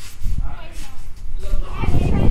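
Indistinct boys' voices calling out, mixed with a low rumble that grows louder near the end.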